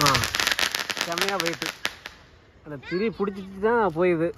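Sky-shot aerial firework bursting overhead in a rapid crackle of many small reports lasting about two seconds, then dying away. Voices call out over the crackle and again near the end.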